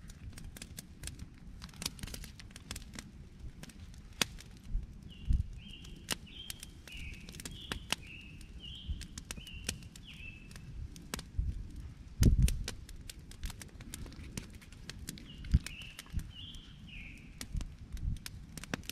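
Wood campfire crackling and popping throughout. A bird calls in short repeated notes in the background through the middle and again near the end, and a dull thump comes about twelve seconds in.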